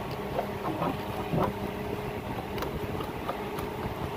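A few short plastic clicks and knocks as a fridge's plastic cover is handled and pushed into place, the strongest about a second and a half in, over a steady low mechanical hum.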